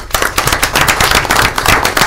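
A small group of people applauding, the individual hand claps close and loud.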